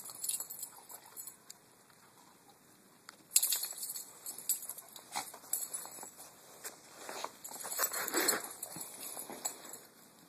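Yellow Labrador puppy playing with a stick in snow: irregular crunching, scraping and rustling as it paws and gnaws the stick. The sounds start suddenly about three seconds in and are busiest near the eight-second mark.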